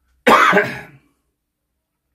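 A man coughs once into his fist, a single short harsh burst about a quarter of a second in, heard over a Skype call.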